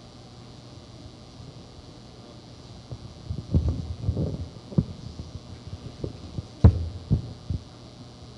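Microphone handling noise: a run of low thumps and knocks as handheld microphones are picked up and adjusted, starting about three seconds in, the sharpest knock near the end. Under it a steady low electrical hum from the sound system.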